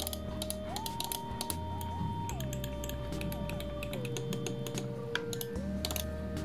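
Logitech G102 gaming mouse's mechanical main buttons clicking repeatedly in quick, irregular succession.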